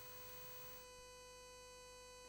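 Near silence: a faint, steady electrical hum with a thin unchanging tone in it.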